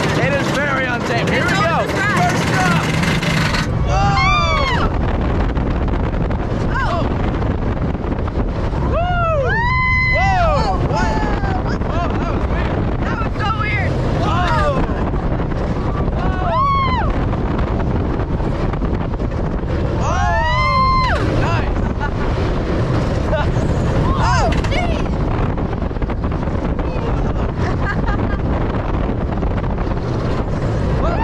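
Riding an RMC hybrid roller coaster: a steady rush of wind over the microphone and the train running on its track, with riders letting out several long rising-and-falling screams.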